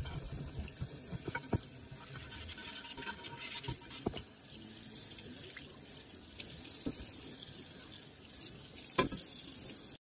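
Water running steadily from a kitchen tap into a sink as a stoneware baking dish is rinsed under it, with a few sharp knocks of the dish against the sink, the loudest near the end.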